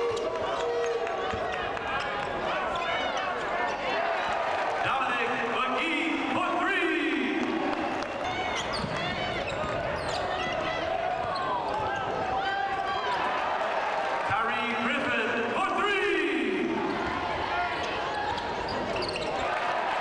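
Live basketball game sound on a hardwood court: the ball dribbling and bouncing, sneakers squeaking in short high squeals, and voices of players and the crowd echoing in the arena.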